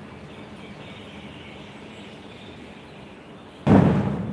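Steady background noise with no clear source, then a sudden loud thump near the end.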